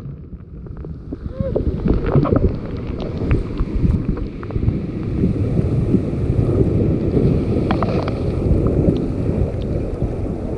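Wind buffeting the microphone over ocean surf, with seawater washing and trickling among the rocks.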